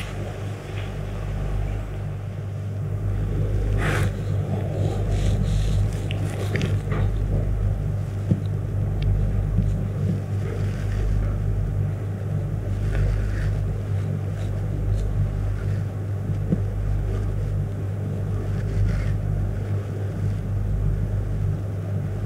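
A steady low hum whose lowest part swells and dips every couple of seconds, with a few soft rustles and taps over it.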